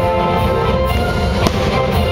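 Aerial fireworks bursting, with one sharp bang about one and a half seconds in, heard over loud music.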